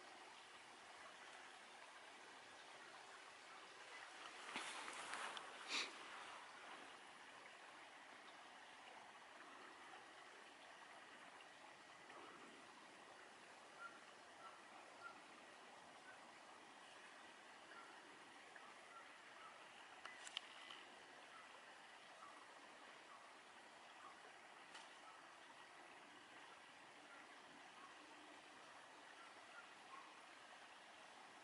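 Faint, steady rush of a small stream carrying storm runoff in a stream bed that is usually dry. About five seconds in there is a short, louder burst of noise, and a few soft clicks follow later.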